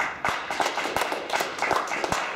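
An audience clapping: many hands at once, in a dense, steady patter.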